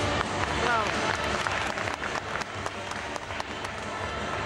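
Spectators clapping in the hall over the routine's accompaniment music, with the claps thickest in the second half.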